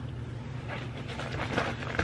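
A steady low background hum, with faint rustling and light clicks of items being moved about by hand.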